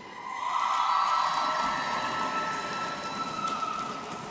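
A single long, steady high tone, held about three and a half seconds and rising slightly in pitch before fading out near the end.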